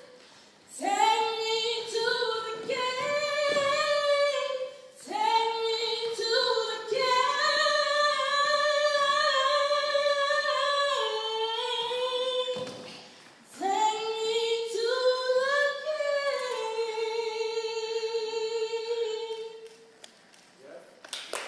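A woman singing live and unaccompanied into a microphone: one voice in three long, slow phrases with brief breaths between them, each phrase settling on a long held note, the last one stopping near the end.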